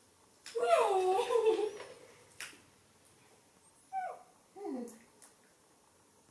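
Baby macaque giving high calls that fall in pitch: a longer one about half a second in, then two short ones around four seconds in. A few sharp clicks fall between them.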